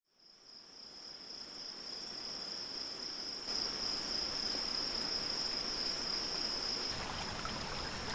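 Crickets chirping in a steady, continuous high chorus, fading in from silence over the first couple of seconds. A low rushing sound joins near the end.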